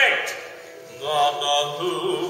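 A voice's pitch falls away at the start. About a second in, a person begins holding a sustained, chant-like sung tone.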